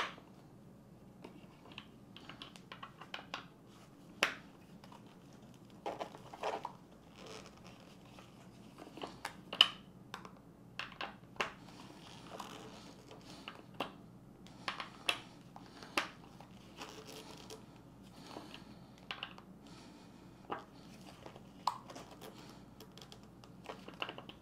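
Gloved hands working a stiff bolt on an office chair, turning it little by little against threadlocker on its threads. Irregular small clicks, scrapes and rustles of glove, metal and plastic, a few sharper clicks standing out, over a faint steady hum.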